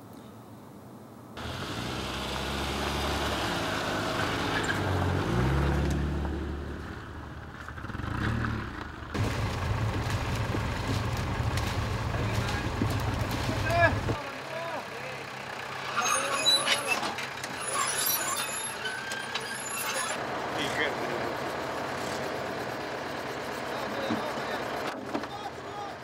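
Farm tractor engine running, a low steady drone that starts abruptly about a second in and drops away at about 14 seconds. After that come lower engine noise and a cluster of sharp clicks and scrapes.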